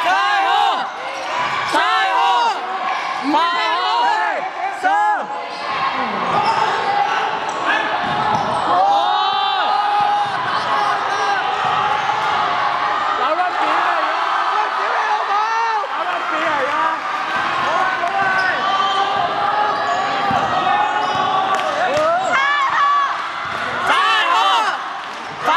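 Basketball game sounds on a wooden court: sneakers squeaking in many short rising-and-falling chirps, the ball bouncing, and players and spectators calling out.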